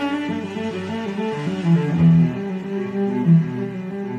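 Solo cello playing a slow bowed melody, its notes held and changing one into the next, with a few louder low notes around the middle.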